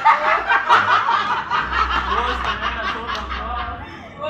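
A group of people laughing together, loud and continuous, with rapid bursts of laughter.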